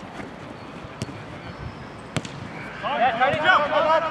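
Football kicked on artificial turf, two sharp strikes of the ball about a second and two seconds in, then players shouting loudly on the pitch from about three seconds in.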